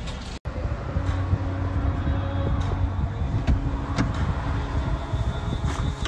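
Car engine running steadily at idle, a low continuous hum heard from inside the car, with a few light clicks and knocks.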